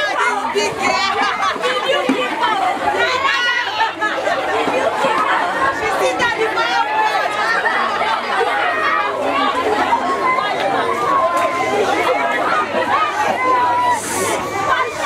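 Many children's voices talking over one another in a continuous, loud chatter.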